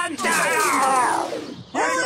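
A cartoon character's long wail, one voice falling steadily in pitch for about a second and a half before it fades out.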